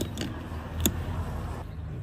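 Light handling sounds of a spanner being fitted to a nut on a Citroën DS heater control valve: a few small clicks, one sharper about midway, over a low steady hum.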